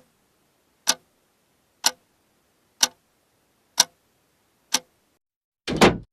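Clock ticking slowly, about one sharp tick a second, six ticks in all. A little before the end comes a louder, longer knock.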